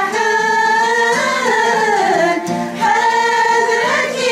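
A group of women singing a Kabyle song together, holding long notes that slide between pitches, with a plucked lute playing along. The voices dip briefly for a breath a little past halfway.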